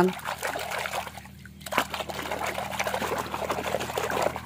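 Water splashing and sloshing in a tub as a hand swishes a plastic toy animal through it, easing off briefly about a second in.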